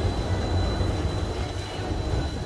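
Chairlift terminal machinery running, a steady low rumble as empty chairs travel round the loading point. A faint thin high whine stays level throughout.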